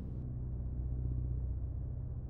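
Steady, low ambient drone: a deep hum with a soft hiss above it, with no changes or sudden sounds.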